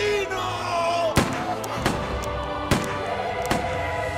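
Four gunshots about a second apart, the first the loudest, over dramatic background music.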